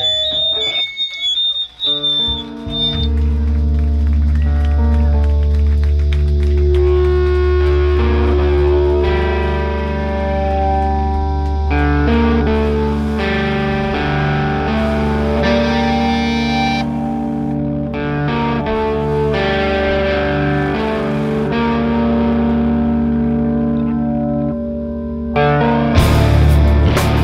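Live hardcore band: the full band cuts off and a high guitar feedback squeal holds for a couple of seconds. Then distorted electric guitar and bass hold long ringing notes over a steady low drone, the chords shifting every second or two. The full band crashes back in near the end.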